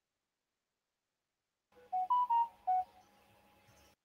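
A short electronic notification chime of three quick pitched notes, picked up just after a computer microphone is switched on, over a faint steady hum of room noise.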